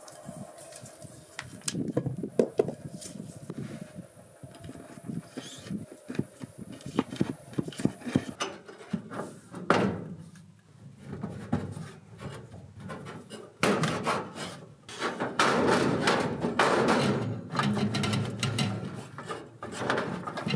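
Scattered knocks and rubs from a half-inch black iron gas pipe being handled, then, in the second half, a longer stretch of louder scraping and rustling as the pipe end is worked through the wall and under the fireplace.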